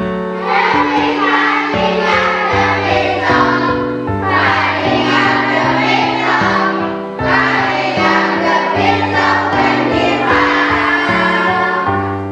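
A children's song: a group of young voices singing together over a backing track of held musical notes.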